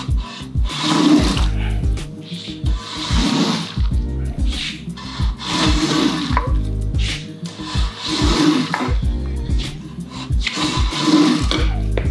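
Background music with a steady beat over wet swishing strokes, about every two and a half seconds, of a metal carpet-cleaning wand squeegeeing soapy water and foam out of a soaked wool rug.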